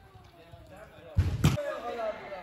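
A soccer ball hitting the arena's wall boards with one loud, heavy thud just past the middle, over the faint voices of children.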